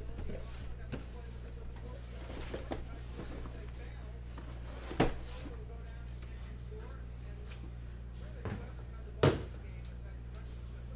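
Cardboard case and sealed boxes being handled and set down, with light rustling and scraping, a sharp knock about five seconds in and a louder one near the end, over a steady low electrical hum.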